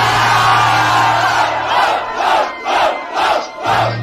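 Large crowd erupting in loud cheers and yells in reaction to a freestyle punchline; after a couple of seconds the roar breaks into shouting in rhythm, about three shouts a second.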